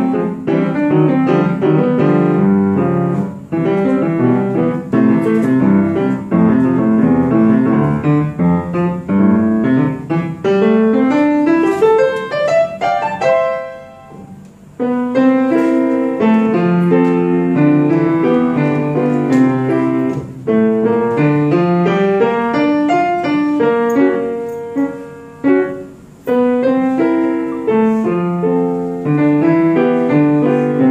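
A piano played solo in a fast, busy passage of running notes. A long rising run from about ten to thirteen seconds in ends in a brief pause, then the playing resumes with steadier chords and figures.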